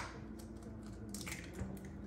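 Faint crackle of an eggshell being pulled apart by hand, and the raw egg slipping into a small bowl.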